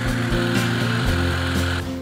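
STIHL HSA 50 battery-powered hedge trimmer running steadily, its blades reciprocating, then cutting off shortly before the end.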